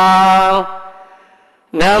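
A Buddhist monk's voice chanting into a microphone in a steady, held tone. The note trails away about half a second in, a short pause follows, and the chant starts again just before the end.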